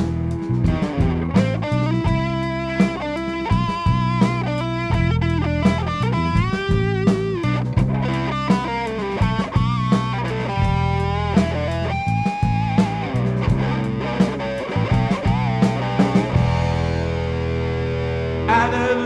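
Instrumental break in a rock song: an electric guitar plays a melodic lead with bent notes over bass and drums.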